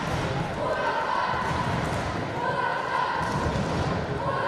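Busy sports-hall ambience: indistinct voices echoing through the hall, with repeated dull thuds.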